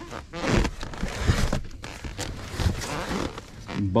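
Cardboard boxes scraping and shuffling against each other, with plastic stretch wrap crinkling, as a box is dug out of a packed bin of boxes. Irregular rustles and scrapes with a few dull knocks.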